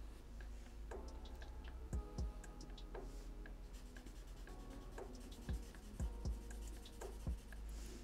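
Felt-tip marker making short shading strokes and taps on paper, with a few soft knocks against the drawing surface.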